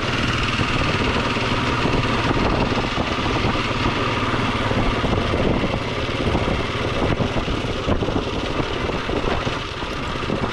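Honda ATV engine running steadily under light throttle while riding along a dirt trail, with the rough-ground clatter of the machine mixed in.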